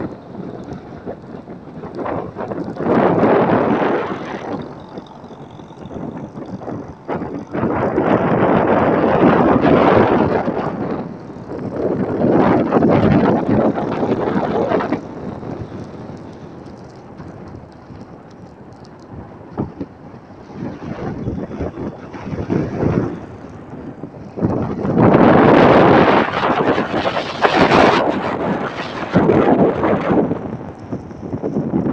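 Wind buffeting the phone's microphone in long, loud gusts from riding through traffic, over the steady noise of the moving vehicle and road.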